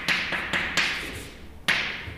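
Chalk writing on a blackboard: about five sharp taps, each trailing into a short scratchy stroke as the letters of a formula go down.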